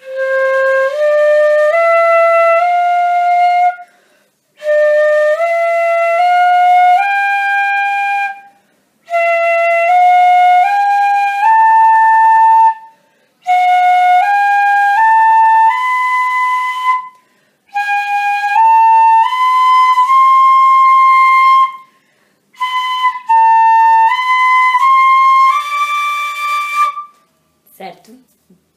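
A pífano, a side-blown Brazilian fife in C, plays a slow practice exercise: six groups of four notes rising step by step. Each group starts one note higher than the last and ends on a held note, with short breaks for breath between groups. The last group has a wrong note in it.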